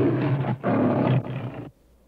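A loud, deep roar like a large animal's, in two long pulls with a short break about half a second in; it fades in its last part and cuts off suddenly shortly before the end.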